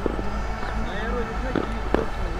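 Faint distant voices over a steady low rumble of open-air ground noise.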